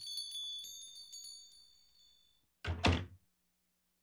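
Shop doorbell ringing as the door opens, its chime re-struck a couple of times and dying away over about two and a half seconds. Then the door shuts with a loud thud about three seconds in.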